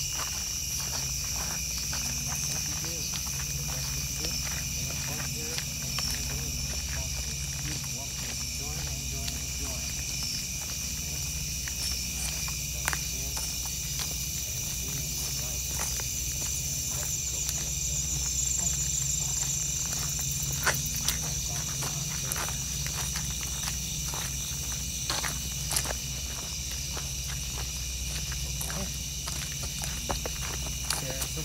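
Crickets calling at night in a steady chorus, a continuous high trill at two pitches, with scattered clicks of footsteps close by and a low steady rumble beneath.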